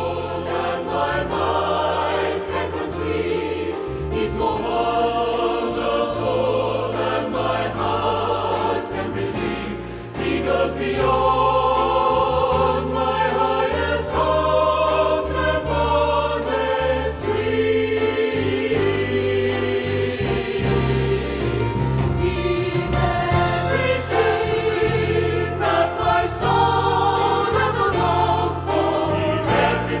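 Mixed choir of men's and women's voices singing a gospel song in harmony over held low accompaniment notes, growing louder after a brief dip about ten seconds in.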